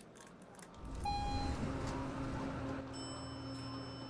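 A low steady hum that starts abruptly about a second in, with a brief clear tone at its onset and faint steady whining tones joining later.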